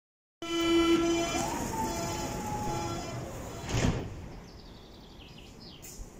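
Berlin U-Bahn train's door-closing warning tone, a loud steady signal lasting about two and a half seconds, then the sliding doors shutting with a single knock just before four seconds in.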